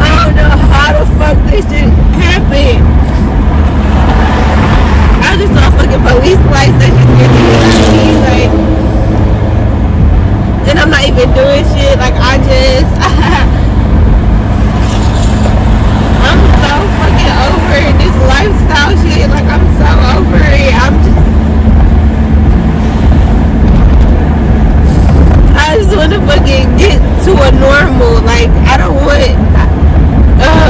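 Steady road and engine rumble inside a moving Honda minivan's cabin, with a woman crying: several drawn-out, wavering wails and sobs over the noise.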